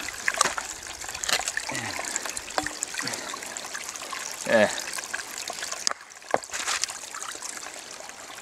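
Shallow runoff stream trickling while rocks are pried out of its bed with a metal tool, giving scattered sharp clicks and knocks of stone. A short voice sound comes about four and a half seconds in.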